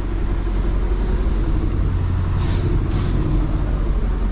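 Concrete mixer truck running steadily while it discharges concrete into the formwork: a steady low rumble, with two brief hissing sounds a little past the middle.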